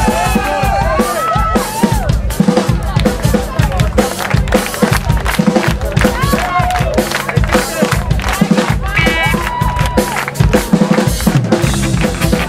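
Rock band playing live: a drum kit with heavy bass drum and snare drives the music under bass and electric guitar, with voices over it.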